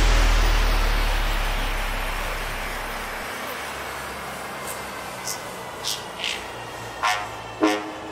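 Electronic dance track in a breakdown: a noise wash and deep bass fade away over the first few seconds, followed by scattered short sweeping effects. Near the end, three short horn-like stabs lead into the return of the full beat.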